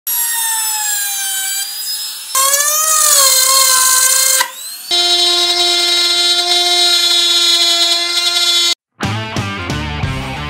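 Dongcheng DMP02-6 wood trimmer (compact router) running at high speed while cutting plywood edges: a loud whine that wavers in pitch under the cut, in three short stretches joined by abrupt cuts. Near the end the whine stops and guitar music with a beat begins.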